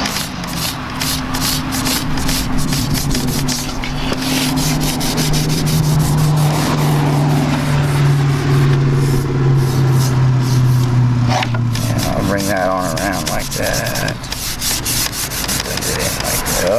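Cloth rag wiping wood stain onto a pine board in quick, repeated rubbing strokes. A low steady hum slowly drops in pitch through the middle and stops suddenly about twelve seconds in.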